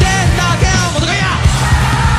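Live rock band playing loudly: a male lead vocalist sings and then yells over pounding drums and electric guitar.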